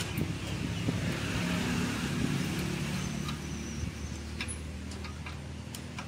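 A motor vehicle running close by, its sound swelling about a second in and easing off after a few seconds, over a steady low hum. A few light metallic clicks from spanners and a ratchet working on a dismantled engine.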